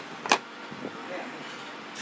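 A single sharp knock about a third of a second in, then faint background murmur.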